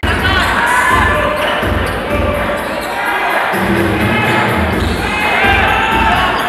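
Live basketball game in an arena hall: a ball bouncing on the court and brief high-pitched sneaker squeaks, over crowd noise and arena music.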